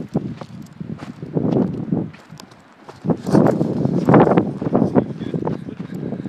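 Footsteps crunching on a loose volcanic cinder trail, about two steps a second, with a brief pause about two seconds in.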